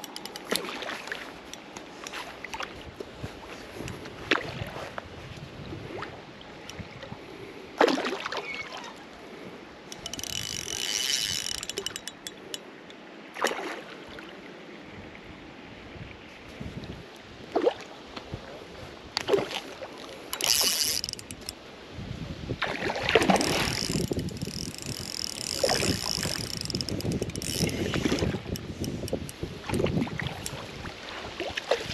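A hooked trout splashing at the surface near the bank in a string of short separate splashes. Wind rumbles on the microphone through the last third.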